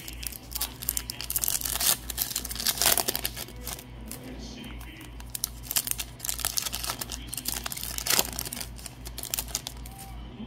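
Crinkling and tearing of a Bowman Chrome trading-card pack wrapper as it is opened, then cards being handled and sorted, with several sharper rustles, over a low steady hum.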